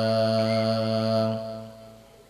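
A man's voice in melodic Quran recitation (tilawat) holding one long, steady note on the last word of a verse, "karima", fading out about a second and a half in.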